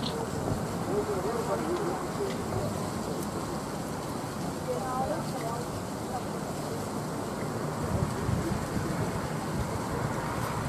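Faint, scattered voices of onlookers talking over steady wind noise on the microphone; no gunshot.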